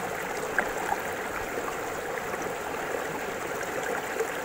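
Steady rush of flowing river water, with one faint click about half a second in.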